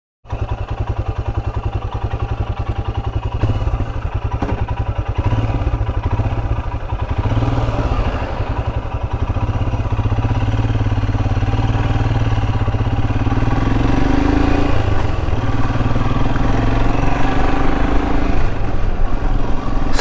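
Royal Enfield Himalayan's single-cylinder engine running at low speed as the bike is ridden along, a steady even pulsing beat that slowly grows louder toward the end.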